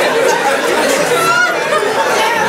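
Comedy-show audience laughing and chattering, many voices overlapping, in the pause after a punchline.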